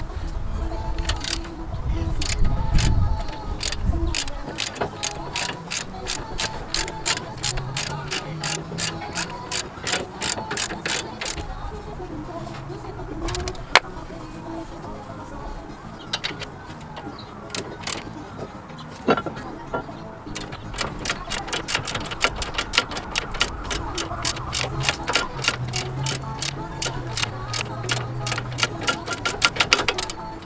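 Socket ratchet wrench clicking in runs as it tightens a brake caliper bolt. There is a pause in the middle, and the fastest, densest run of clicks comes in the second half.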